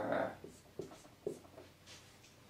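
Marker writing on a whiteboard: a few short, faint strokes.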